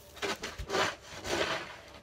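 Snow crunching and scraping in three short bursts.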